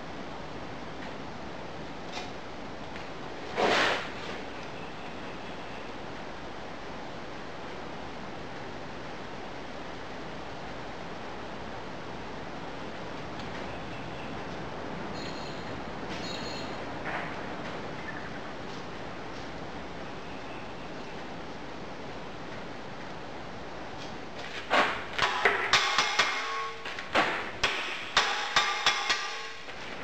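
Molten aluminium being poured into sand moulds over a steady hiss, with a single sharp clink about four seconds in. Near the end comes a run of loud clattering knocks and thuds as the sand moulds are broken up to free the castings.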